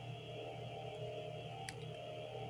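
A brief pause in speech with a faint steady background hum or tone underneath, and one faint click near the end.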